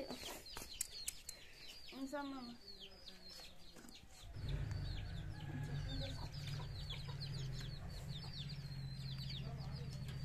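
Domestic chicks peeping over and over, short high falling peeps. A brief voice comes about two seconds in, and a steady low hum comes in about four seconds in.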